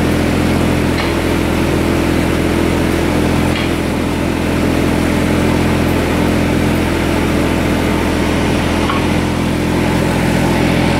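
22 hp Kubota diesel engine of a Boxer 322D walk-behind drilling rig running steadily at one constant speed.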